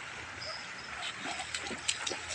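Small waves washing over a sandy shore in a steady hiss of surf, with a few short sharp clicks and brief faint pitched sounds in the second half.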